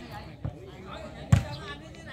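A volleyball being struck: one sharp smack a little past halfway, with a fainter knock earlier, over faint crowd chatter.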